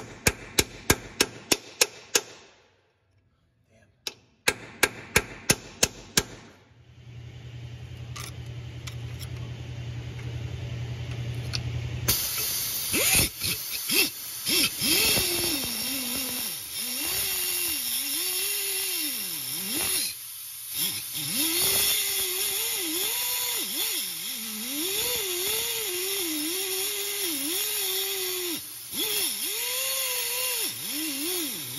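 Hammer blows on a cold chisel against seized screws: two quick runs of about eight sharp strikes each in the first six seconds. Then an air-powered cutting tool hums, and from about twelve seconds in grinds into the screw heads with a hiss, its pitch dipping and rising as it loads and eases off; it was slow and didn't cut that great.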